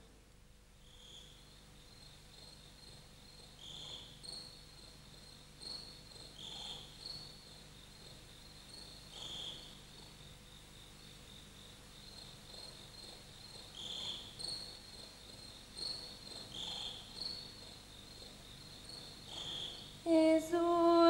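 Crickets chirping faintly: short high chirps every two to three seconds over a steadier high pulsing trill.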